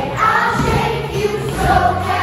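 A group of children singing a song together as a choir.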